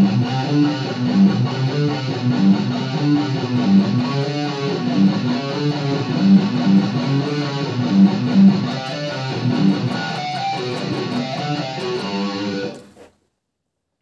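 Distorted electric guitar playing a repeating low riff in triplets on the two lowest strings: frets 3 and 7 on the low E string, then 3 and 5 or 4 and 5 on the A string. It cuts off suddenly about a second before the end.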